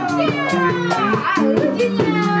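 Live band performing: several vocalists singing in gliding, pansori-style lines over electric bass and keyboard, with a steady drum beat.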